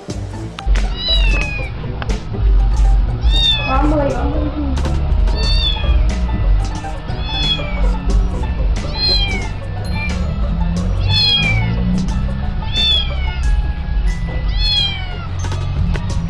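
A small kitten meowing over and over: short, high-pitched calls that fall in pitch, about one every two seconds. Background music with a heavy low bass runs underneath.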